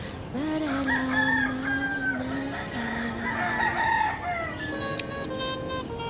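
A rooster crowing over a song with long held sung notes. Plucked guitar notes come in near the end.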